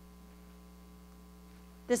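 A low, steady electrical mains hum, heard during a pause in a talk, with a couple of fixed low tones.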